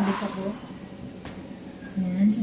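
A plastic knock as the handheld vacuum's dust container and filter are handled and set down on the table, followed by a short low hum from a person's voice, then a faint click about a second later.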